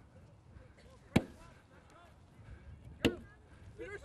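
A football struck twice, two sharp thuds about two seconds apart, with faint voices between them.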